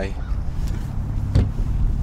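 A steady low rumble with one sharp knock about one and a half seconds in.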